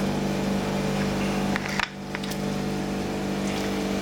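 Steady low hum of a running machine motor. A few light clicks come near the middle, like a spatula tapping a glass plate.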